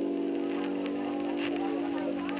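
Background music holding one sustained chord, with faint rustles of paper pages being turned.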